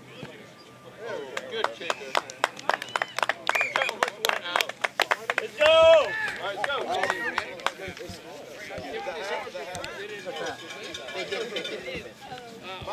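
A few people clapping their hands for several seconds amid voices, then one loud high shout about six seconds in, followed by scattered chatter.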